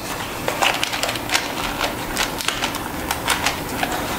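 Light, irregular clicks and taps of a small cardboard box and a marker being handled and set against a steel plate on a steel table.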